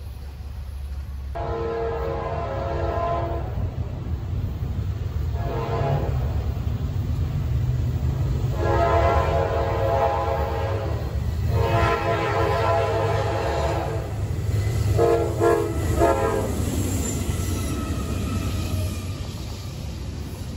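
Norfolk Southern freight locomotive's air horn sounding a chord in a series of blasts as the train approaches: a long blast, a short one, two long ones, then a broken, stuttering one. A low rumble from the oncoming train runs underneath and grows as the double-stack cars arrive near the end.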